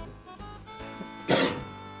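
Background music, with a single cough about a second and a half in.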